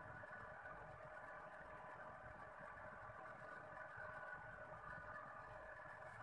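Near silence with a faint, steady hum that does not change.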